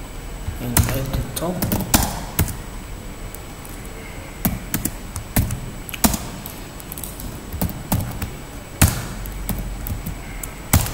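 Computer keyboard keystrokes, sparse and irregular, with a few louder knocking strikes among them.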